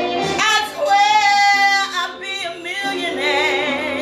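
A woman singing a blues song over accompanying music, with long held notes and a marked vibrato, strongest about three seconds in.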